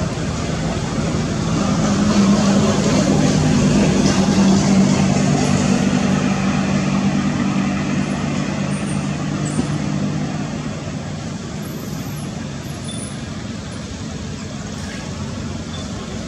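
Engine hum of a passing motor vehicle, growing louder about two seconds in and fading after about ten seconds, over a steady background hiss.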